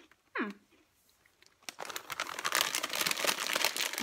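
Crinkly plastic snack packaging crackling as it is handled, starting a little under two seconds in and going on steadily.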